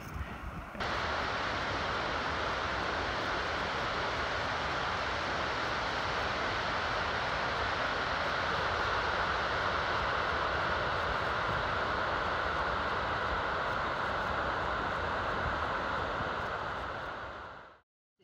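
Glacial meltwater river rushing: a steady, even noise of fast-flowing water that starts suddenly about a second in and fades out just before the end.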